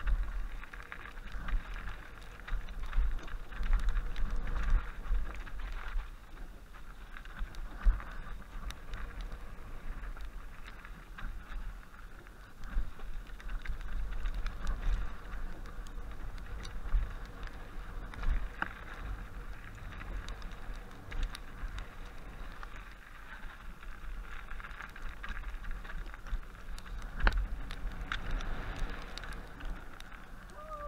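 Mountain bike riding down a snowy dirt trail: wind rumbling on the microphone over tyre noise and the rattle of the bike on bumps, with a few sharp knocks.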